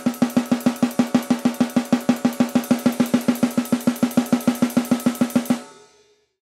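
Drum kit playing a traditional blast beat: snare strokes alternating with kick drum and cymbal in a fast, even stream of about seven hits a second, played with a stiff, outstretched forearm as the wrong technique. The beat stops abruptly about five and a half seconds in, leaving a brief ring.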